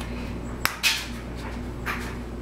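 Small handling sounds of finger painting: one sharp click a little over half a second in, then two short scuffs, with a faint steady hum underneath.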